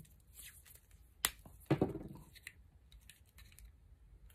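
Black PVC electrical tape being wrapped round a cable sheath and torn off the roll, with a sharp click a little over a second in and a louder knock just after; light handling rustles around them.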